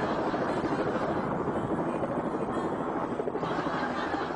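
Helicopter hovering close by: steady rotor and engine noise with a rapid flutter.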